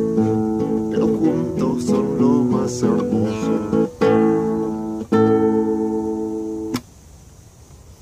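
Classical guitar playing the song's closing phrase: picked notes, then two strummed chords about a second apart. The last chord rings until it is stopped short near the end.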